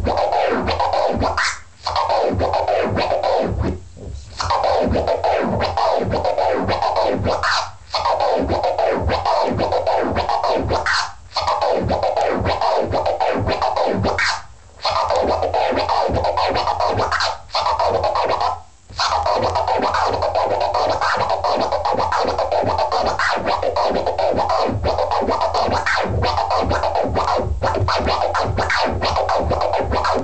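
Turntable scratching: a sample on a vinyl record is pushed forward and back by hand while the crossfader is clicked rapidly to chop it, playing the mirrored double-click flare combo (double click forward, double click back, one click forward, then the same in reverse) over and over. There are brief breaks every few seconds through the first two-thirds.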